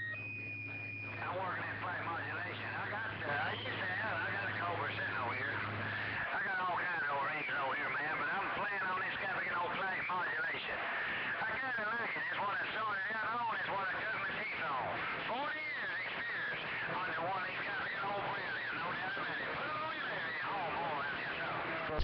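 Another operator's transmission received on a Cobra 2000 CB base station and heard through its speaker: a strong signal, a man's voice coming in warbly and crowded, after a short beep at the start. A low hum sits under it for the first six seconds, the hum the owner is trying to get out of his newly hooked-up radio.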